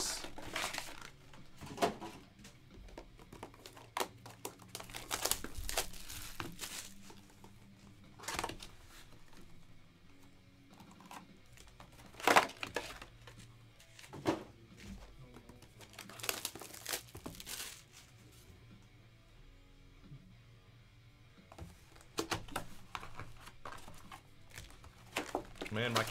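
Sports-card box and card packs being handled: irregular crinkling, rustling and light knocks of packaging, with one sharp knock about twelve seconds in. Quiet background music underneath.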